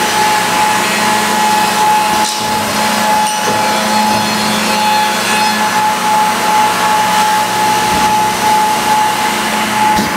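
Grizzly G0774 automatic edgebander running with a panel feeding through it: a steady, loud machine drone with a constant whine.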